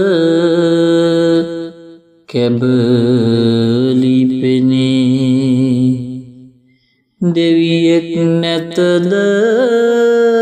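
A single voice chanting Sinhala folk verse (kavi) in long, drawn-out melodic lines with wavering held notes, breaking off for breath about two seconds in and again around seven seconds.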